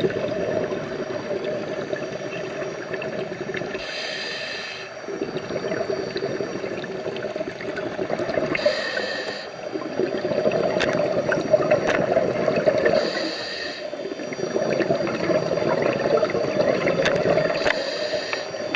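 A scuba diver breathing through a regulator underwater: a short hissing inhale about every four to five seconds, each followed by a long burbling rush of exhaled bubbles.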